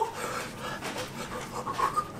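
A man's breathy, panting laughter, quiet and uneven.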